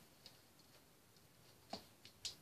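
Near silence broken by a few faint plastic clicks of toy bricks being handled, the clearest one near the end.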